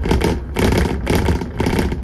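Dennis Trident 2 double-decker bus under way, heard from the top deck: a steady low engine and road rumble, with louder bursts of noise about twice a second.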